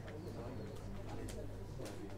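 Quiet room tone: a steady low hum with faint low pitched sounds and a few light clicks.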